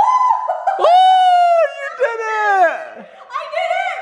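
A woman squealing in surprise and laughing, in three high-pitched cries: a short one, then two long ones that fall off at the end, then quieter laughter near the end.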